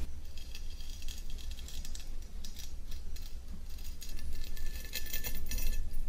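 A kitchen knife blade scraping through a beard close to a binaural microphone: a steady run of fine, crackly scratches over a low hum.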